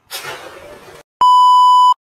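A splash of water as a person plunges into a swimming pool, then, after a short gap, a loud steady censor bleep that lasts under a second and cuts off sharply. The bleep is the kind used to mask a swear word.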